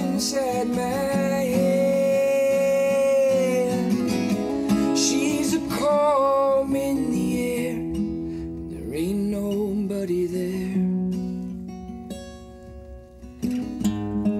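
Male voice singing over strummed acoustic guitar, with a long held wordless note in the first few seconds and shorter vocal phrases after it. The guitar thins out and drops quieter near the end before a fresh strum comes back in.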